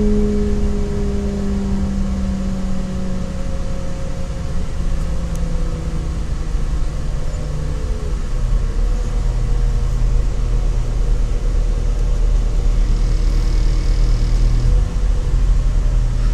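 Interior running noise of a CAF Class 4000 diesel multiple unit. The underfloor engine and transmission wind down with a falling whine as the train slows into a station, then settle to a steady low engine hum.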